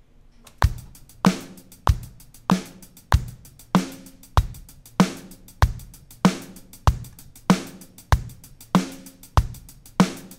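Programmed drum-kit pattern from the SoCal kit, played back just after being quantized to a sixteenth-note swing grid: a kick or snare hit on every beat at about 96 beats a minute, with closed hi-hat ticks in sixteenths between. It starts about half a second in.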